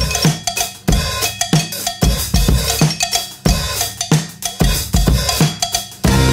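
Drum break in a garage-rock song: a drum kit playing a beat of kick, snare and cymbal hits, with little else under it.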